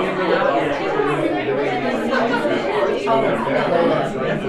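Several people talking at once in a room: steady, indistinct, overlapping chatter with no single clear voice.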